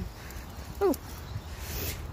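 A woman's short, falling "ooh" about a second in, over a steady low rumble of handling and movement noise as a pram is pushed along a paved path.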